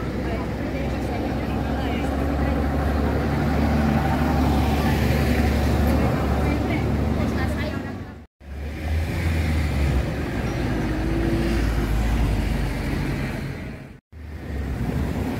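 City street sound: motor traffic with a steady low rumble, with people's voices in the background. The sound drops out briefly about eight seconds in, then the same street noise resumes.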